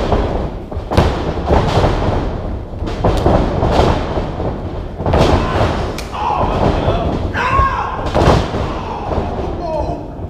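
Wrestlers' bodies and blows hitting a pro-wrestling ring's canvas-covered boards: a string of hard thuds and slams roughly a second apart, echoing in a large room.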